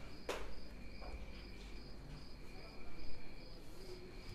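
Insects chirping in a steady, pulsing, high-pitched trill, with a single sharp click shortly after the start.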